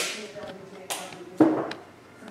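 A stack of glossy hockey trading cards being handled by hand, a card slid off the stack and flicked to the other side, with two sharp snaps about a second in and again half a second later.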